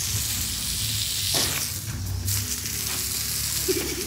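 Gloved hands working potting soil around a fern in a plastic pot: a steady crackling rustle.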